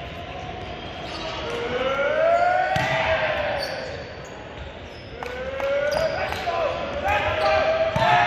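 Volleyball rally in a gym hall: the ball is struck by hands about three seconds in, then several more times in quick succession between about five and six and a half seconds, while players let out long drawn-out shouts that rise and fall in pitch.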